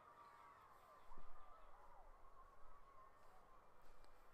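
Near silence outdoors, with faint chirping bird calls about a second in and through the middle.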